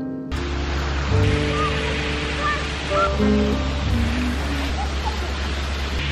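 Acoustic guitar background music over a steady rushing noise with a low hum, which comes in just after the start. The noise is background noise that is taken for nearby construction work.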